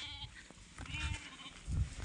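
Sheep bleating: a faint high-pitched bleat at the start and another, wavering one about a second in. Low rumbles on the microphone come near the end.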